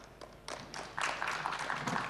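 Audience applauding with scattered claps that start about half a second in and grow denser and louder.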